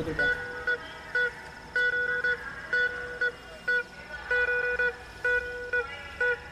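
A single-pitched, horn-like tone sounding over and over in short and longer honks in an uneven rhythm, about a dozen times.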